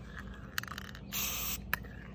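Aerosol can of metallic spray paint giving one short hiss about a second in, lasting about half a second, with a sharp click shortly before and after it.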